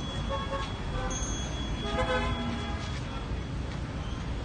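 Horn-like wind instrument of a Korean royal guard ceremony's processional band: a few short notes, then one longer held note of about a second, over open-air crowd background.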